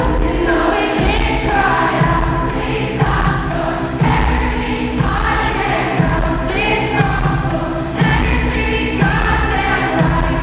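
Live pop concert music through a venue's PA: a heavy bass beat about once a second under layered, sustained singing.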